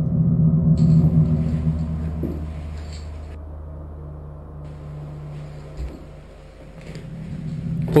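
Low, dark droning background music under the footage. It fades down through the middle and swells back near the end, with a faint hiss over parts of it.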